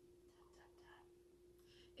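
Near silence: room tone with a faint steady hum, and a few very faint soft sounds about half a second in and again near the end.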